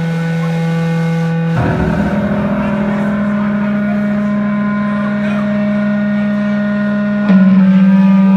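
Electric guitar and bass amplifiers droning with steady, unbroken feedback tones between songs. The pitch shifts about a second and a half in, and the drone steps up louder near the end.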